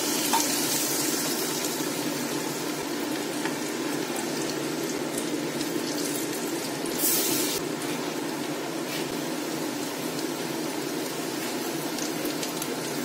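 Chana dal vadas deep-frying in hot oil in a steel kadai: a steady sizzle of bubbling oil. About seven seconds in there is a brief, louder flare of hissing.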